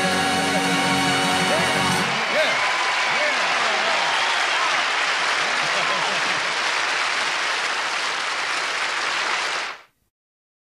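A band's closing chord sounds for about two seconds and cuts off, then a large audience applauds and cheers. The applause fades out just before the end.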